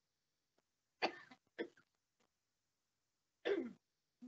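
Three brief vocal sounds, about a second in, just after, and near the end, separated by silence.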